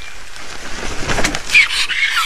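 Black stork flying in to the nest: wingbeats and landing noise build up about half a second in, then short high whistled calls, one sliding down in pitch, near the end, as the storks greet at the nest changeover.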